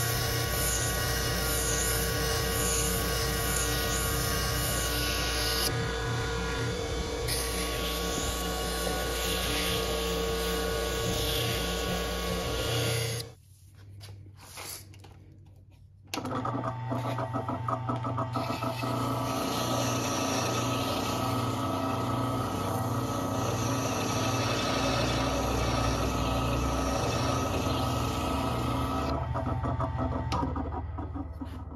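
Electric wheel sharpening machine running with a steady motor hum while a knife blade is worked on its wheels. The sound drops out abruptly about a third of the way through, resumes a few seconds later, and begins to fade just at the end.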